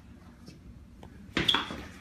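A sudden knock a little over a second in, followed at once by a louder clatter with a brief high ring.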